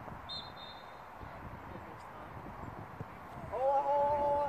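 A loud, long, held shout from a person on a football pitch, starting near the end, over a low open-air background. A faint, short high tone sounds about a second in.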